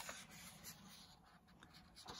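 Faint rustle of a paperback colouring book's page being turned by hand, with a soft brush of paper near the start and again a moment later.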